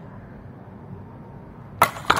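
A single sharp knock near the end: the plastic EVAP charcoal canister and purge valve assembly being knocked against a concrete floor to shake out the dirt it is plugged with.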